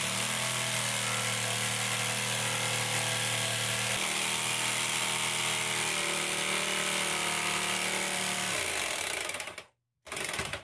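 Corded jigsaw cutting a sink opening in a countertop: the motor and reciprocating blade run at a steady speed, the pitch dipping slightly about four seconds in. Near the end the saw is switched off and the motor winds down to a stop.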